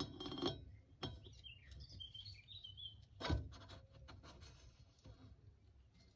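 Faint metallic clinks and one sharp knock about three seconds in, as the greased steel axle spindle, with the brake disc on its flange, is slid into the hub bearings of a motorcycle's single-sided swingarm.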